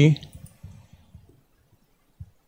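The end of a spoken word, then a few faint, soft computer mouse clicks and near silence.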